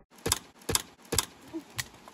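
Dry dead twigs and branches snapping: four sharp cracks about half a second apart.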